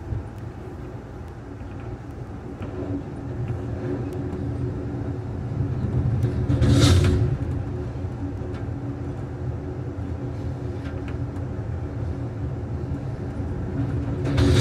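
Amtrak passenger train rolling along the track, heard from inside the rear car: a steady low rumble of wheels on rail that swells about seven seconds in with a brief louder rush.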